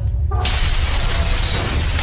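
A sudden crash-and-shatter sound effect about half a second in, like stone breaking apart and debris scattering. It plays over intro music with a steady low bass.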